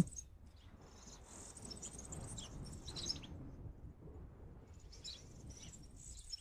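Faint, high-pitched bird chirping, strongest in the first half and coming back weaker near the end.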